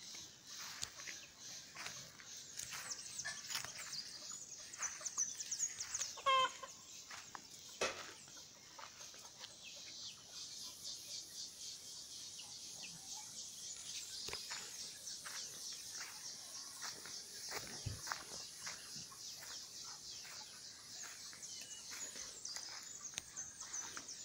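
Chickens clucking softly, with scattered short calls and one clearer call about six seconds in, over a steady high-pitched background chorus.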